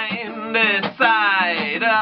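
A man singing live to a strummed acoustic guitar, with a long sliding vocal note in the second half.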